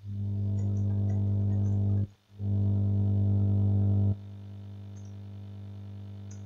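A low electrical hum with a buzzy stack of overtones. It cuts out briefly about two seconds in, comes back, then drops to a softer level about four seconds in and carries on. Faint computer-keyboard clicks sound over it.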